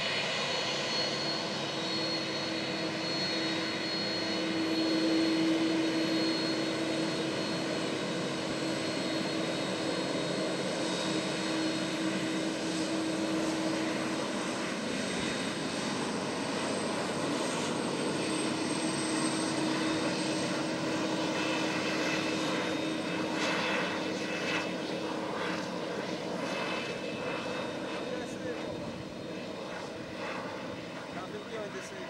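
Boeing 767-200ER's twin turbofan engines running at taxi power after landing: a steady jet whine with a low hum that drops away briefly midway and returns.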